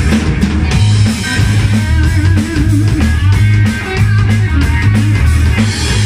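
Live rock band playing: electric bass line, drum kit and electric guitar, with a lead line of wavering, bending notes above the rhythm.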